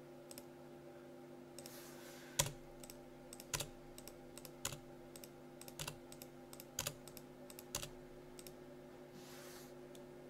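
Computer keyboard and mouse clicks: a string of separate sharp clicks roughly a second apart, with fainter ones between, over a steady low hum.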